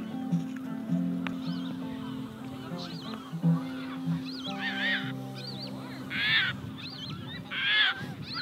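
Large birds calling, with three loud harsh calls in the second half over many quieter calls, against soft background music of long held low notes.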